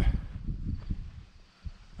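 Outdoor background noise with an uneven low rumble on the microphone and a soft knock about one and a half seconds in.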